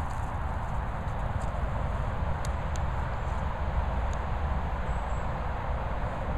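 Steady low rumble of wind on the microphone, with a few faint clicks scattered through it.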